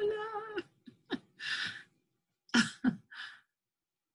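A woman's voice holds out a spoken greeting, followed by several short, breathy bursts of laughter from call participants, heard over video-call audio.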